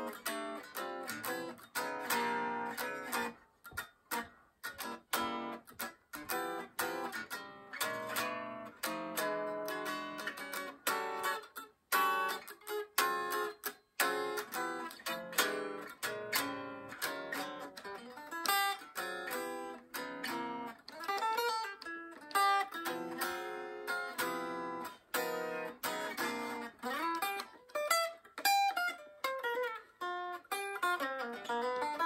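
Semi-hollow electric guitar played with a pick through a blues in G, comped with short, clipped chords separated by gaps. From about halfway, single-note fills and riffs are mixed in with the chords.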